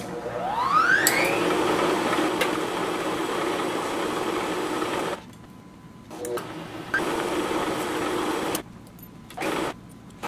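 Milling machine spindle switched on with a click, its motor whine rising in pitch over the first second, then running steadily while a twist drill in the drill chuck bores the pivot hole through the handle blank. The running stops suddenly about five seconds in and starts again near seven seconds. It stops again shortly before the end.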